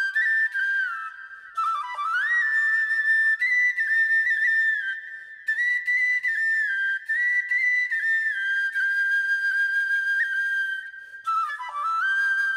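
Background music: a solo high-pitched flute melody with sliding notes and no accompaniment, played in phrases with short breaks about a second and a half in, around five seconds in, and near the end.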